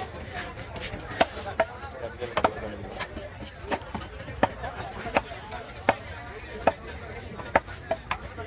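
A large cleaver chopping through tuna flesh into a wooden chopping block: about ten sharp chops, roughly one every three-quarters of a second.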